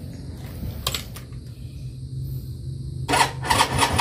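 Suzuki X4 motorcycle engine being cranked by its electric starter, then catching about three seconds in and running loudly with rapid firing pulses: a start after the bike has sat unused for about a week.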